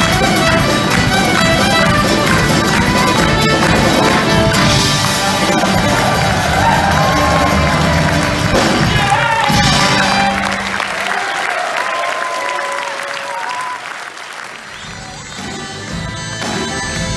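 Live Irish folk band playing an instrumental tune: fiddle and accordion carry a winding melody over acoustic guitars, electric bass and drums. About ten seconds in the bass and drums drop out and the sound thins and quiets, and a different performance starts just before the end.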